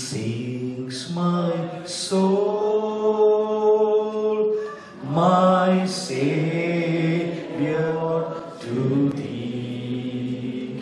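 A man singing a slow hymn into a microphone, with long held notes and no clear instrumental backing.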